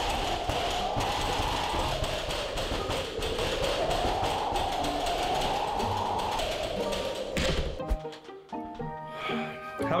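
Storm sound effect: a howl that slowly rises and falls in pitch, twice, over a steady rushing noise. It cuts off sharply about seven and a half seconds in, and a few light plucked music notes follow.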